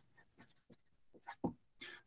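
Felt-tip marker writing on paper: a few faint, short strokes, the loudest about a second and a half in.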